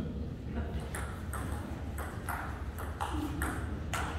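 Table tennis rally: the ball clicking off the rackets and the table in quick alternation, about two sharp hits a second.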